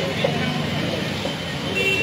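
Steady low rumble of road traffic with faint voices behind it, and a brief high tone near the end.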